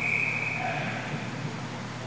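A referee's whistle blown once, a high steady note starting suddenly and lasting about a second, over the rink's steady low hum.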